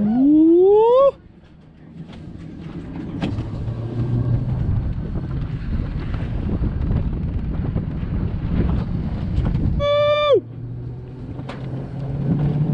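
An alpine coaster sled running down its metal rail track, its rolling noise with a low hum growing louder over several seconds. The rider gives a rising whoop at the start and a held shout that falls off about ten seconds in.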